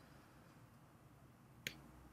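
Near-silent room tone with one sharp click near the end, from working a computer.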